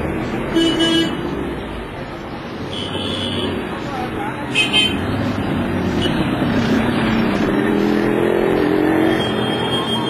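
Street traffic running steadily, with vehicle horns tooting in short blasts about half a second in, around three seconds and near five seconds. Voices can be heard in the mix.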